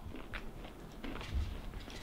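A person chewing a mouthful of fried raccoon meat, with faint mouth noises and small clicks.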